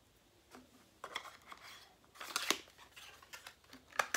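Rustling and scraping of skincare product packaging, a small cardboard box and bottle, being handled, starting about a second in, with a few sharp clicks and the loudest scrape a little past the middle.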